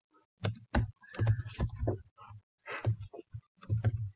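Typing on a computer keyboard: irregular keystrokes in short runs, starting about half a second in.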